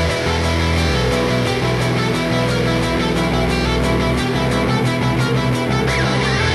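Loud rock music: electric guitar and bass over a steady drum beat.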